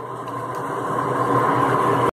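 Steady motor hum with a faint high whine, slowly getting a little louder.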